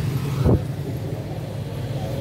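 Steady low rumble of street traffic and engines, with one short thump about half a second in.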